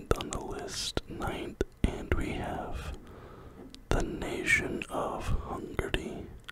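A man whispering, with a pen writing on paper beneath the whisper.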